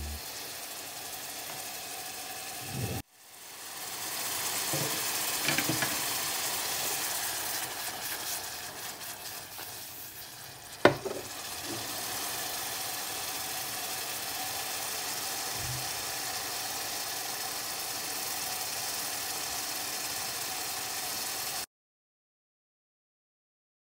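Diced onions sizzling in oil in a saucepan, a steady frying hiss. The sound cuts out briefly about three seconds in, then builds back up. A few light clicks come soon after, and one sharp knock halfway through.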